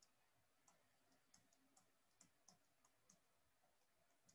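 Near silence broken by faint, irregular clicks, about two or three a second: a stylus tapping on a tablet while writing.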